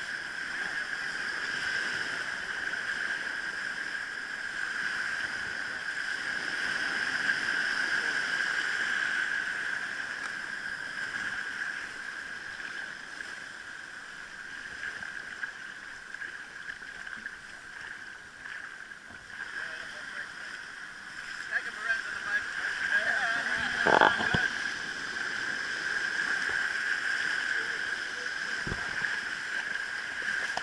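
Small surf waves washing in over sand and around wading legs, with a steady high whine throughout. About three-quarters of the way in come a few short voice-like sounds and a single sharp knock.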